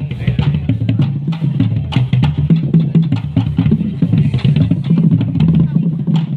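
Marching drumline playing a fast, dense rhythm, the deep strokes of the large marching bass drums to the fore.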